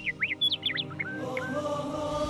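Birdsong: a quick run of short rising and falling chirps, then about a second in a chant of held voices begins, the start of a closing theme with nature sounds.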